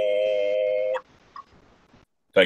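A harmonica holding one steady chord, which cuts off sharply about a second in, followed by near quiet with a faint click.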